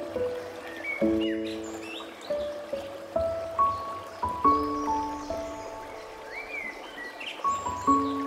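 Slow, gentle solo piano playing single notes and soft chords, with the sound of a running stream beneath it and a few bird chirps about two seconds in and again near the end.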